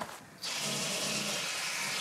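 Kitchen tap running steadily into a sink. It starts about half a second in and stays even.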